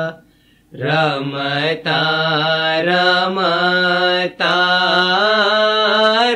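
A voice singing an Ismaili ginan, a devotional hymn, in long held notes with ornamented, wavering pitch. It pauses briefly for breath right at the start.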